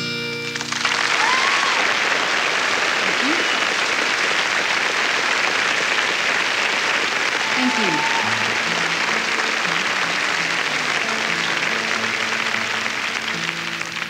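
Concert audience applauding and cheering, with a few whistles, right after the last strummed chord of an acoustic guitar song rings out. From about halfway, single guitar notes are picked softly beneath the applause.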